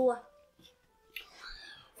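A boy's spoken word trailing off, a short pause, then a faint breathy whisper from the boy in the second half, just before he speaks again.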